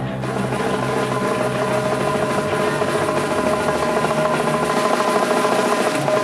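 Grindcore band playing live, loud: distorted guitars hold a sustained chord over fast, busy drumming. The bass drops out near the end.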